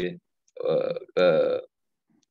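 A man's voice making two drawn-out hesitation sounds, each about half a second long, with short silences between them.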